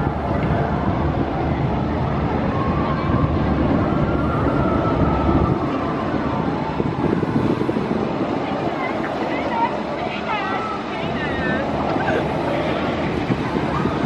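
B&M stand-up roller coaster train rumbling along its steel track, heard from a distance, with people's voices mixed in. The deep part of the rumble eases about five seconds in, and a few high wavering squeals come through around ten seconds in.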